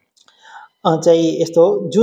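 A man lecturing in Nepali into a handheld microphone. A short pause with a brief soft breathy sound comes first, and the speech resumes just under a second in.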